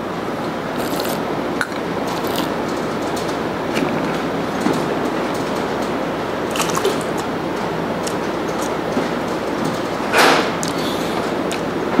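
A wine taster sips red wine and spits it into a plastic bucket, over a steady background hiss with a few small clicks. A short, louder rush of noise comes about ten seconds in.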